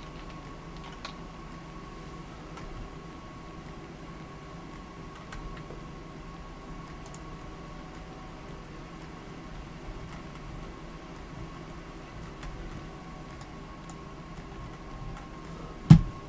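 Room tone: a steady electrical hum with a faint high whine, broken by a few faint clicks and one sharper click near the end.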